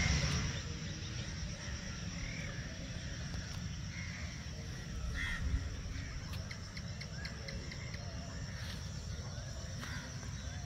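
Rural outdoor ambience: a steady high drone of insects, with scattered short bird calls over a low rumble.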